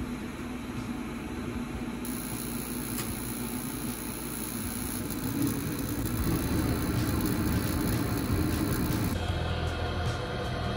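Mr. Heater Big Maxx 125,000 BTU gas unit heater firing up for the first time: a steady whir and rumble of its blower and burners, growing somewhat louder about halfway through.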